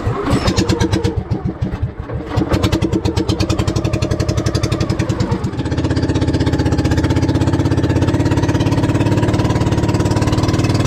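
Small boat engine of an outrigger bangka starting suddenly and running with rapid, even firing beats. About five and a half seconds in it is opened up to a steadier, louder running note as the boat gets under way.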